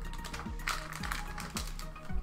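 Background music with a steady beat, about two beats a second, over light tapping and rustling of baseball cards and their foil wrapper being handled.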